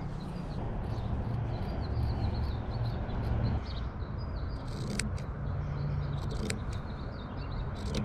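Scissors snipping small pieces of cotton t-shirt fabric, a few faint clicks in the second half, over a steady low outdoor rumble with faint bird chirps.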